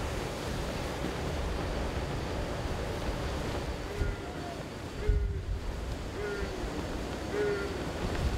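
Sea water rushing and breaking between two ships steaming close alongside, with wind buffeting the microphone as a low rumble and a gust about five seconds in.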